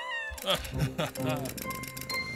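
A cartoon kitten meowing, several short meows over light background music.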